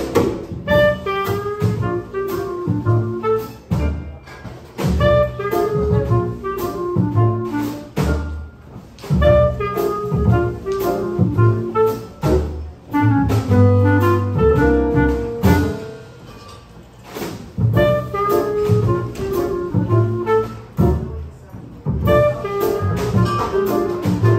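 Small jazz group playing a swing tune live: clarinet carrying the melody over upright bass, piano and drums, with a steady beat throughout.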